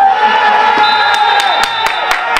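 Voices shouting and cheering at a goal just scored, with rhythmic clapping starting about a second in at about four claps a second.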